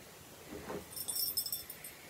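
A necklace's fine chain and small birdcage pendant jingling faintly for under a second as they are picked up, a light metallic tinkle about a second in.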